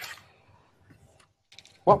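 A short pause in a man's speech: near silence with a few faint ticks, then his voice starts again near the end.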